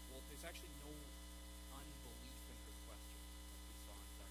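Steady electrical mains hum in the recording, with a few faint, indistinct voice sounds about half a second in and around two seconds in.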